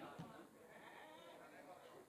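Near silence with faint, distant voices.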